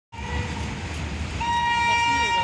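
Horn of an approaching railway inspection car: a steady tone that becomes a louder, fuller blast about one and a half seconds in, over a low rumble.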